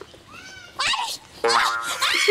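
A woman's high-pitched squealing cries: a short sharp one about a second in, then a longer one near the end.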